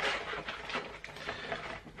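Cardboard Funko Pop box being handled as the vinyl figure is pulled out of it: a string of irregular small clicks, rubs and scrapes that thin out near the end.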